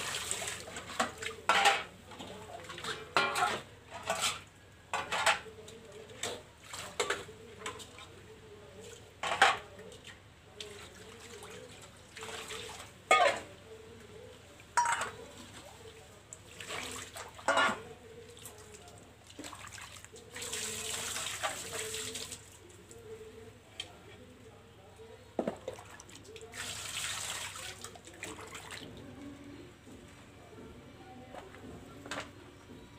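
Steel plates and bowls being washed by hand: repeated sharp clinks and knocks of metal dishes against each other and the concrete floor, with water splashing and running. Two longer pours of water come in the second half.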